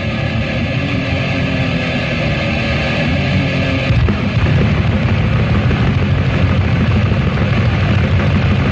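Death metal played by a band: heavily distorted electric guitars over fast drums, with a sharp hit about four seconds in and a denser, heavier part after it.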